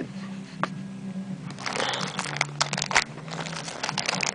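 Hands handling a Beyblade's crinkly plastic packaging: one sharp click early, then a run of rustles and clicks in the second half, over a low steady hum.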